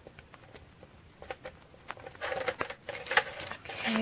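Metal embossing stylus pressing and tapping dots into cardstock through a plastic scoring-plate template, with faint ticks. About two seconds in, the plastic template sheet is lifted and slid off, giving a louder rustle with sharp clicks.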